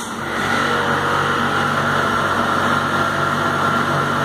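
Steam sterilizer's vacuum pump running during the pre-vacuum phase: a steady mechanical hum with a high whine, growing louder in the first half-second and then holding level.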